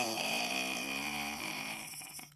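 A pitched sound-effect sting: a tone that glides downward, then holds a wavering note and slowly fades out.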